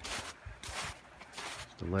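Footsteps on packed snow, about one step every two-thirds of a second.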